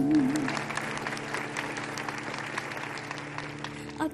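Concert audience applauding after a song phrase ends. A held, wavering sung note and the band's sustained chord die away in the first half-second.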